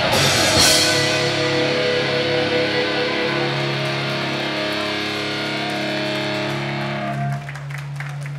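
Live rock band ending a song: a last cymbal crash, then the electric guitars and bass ring out on a held chord through Marshall amplifiers, slowly fading. Near the end the chord is cut off, leaving a low steady amplifier hum.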